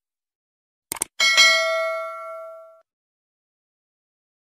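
End-screen subscribe-button sound effects: two quick mouse-click sounds about a second in, then a bright notification-bell ding, struck twice in quick succession, that rings out and fades within about a second and a half.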